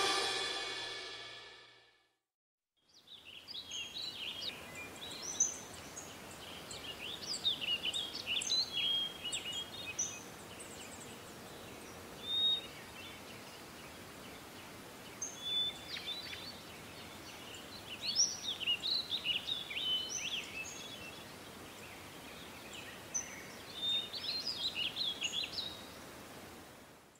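A pop song fades out in the first second or two; after a short silence, small birds chirp and twitter in scattered spells over a faint steady hiss.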